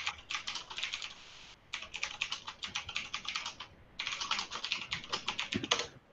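Fast typing on a computer keyboard: quick runs of keystrokes, broken by two short pauses about one and a half and four seconds in.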